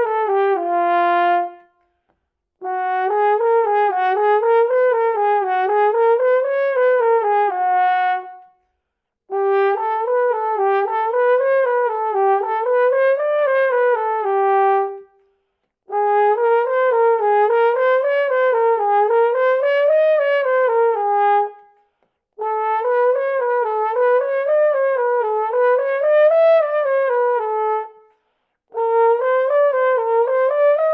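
Double French horn on its B-flat side playing a slurred lip-flexibility exercise across a fifth: quick runs up and down through the natural harmonics, each phrase ending on a held lower note. The phrase is played about five times with a short breath between, each time on the next valve combination, so a half-step higher.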